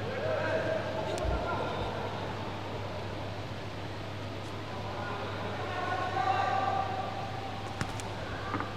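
Indistinct voices calling out in a sports hall over a steady low hum, with a sharp smack about a second in and another just before the end as blows land on padded sparring gear.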